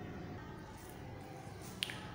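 Quiet room tone with a single sharp click near the end.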